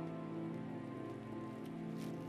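Background film-score music: a held chord of several sustained notes that shift slowly, over a faint steady hiss.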